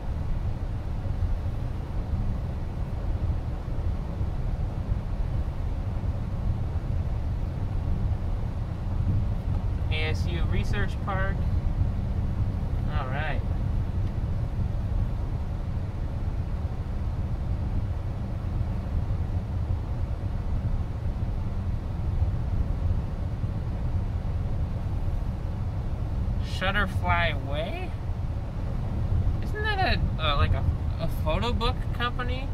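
Steady low road and tyre rumble inside the cabin of a moving Chrysler Pacifica Hybrid minivan. Short stretches of a voice come in about a third of the way through and again near the end.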